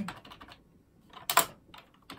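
Computer keyboard keys being pressed: a few light taps, then a loud clattering keystroke about halfway through.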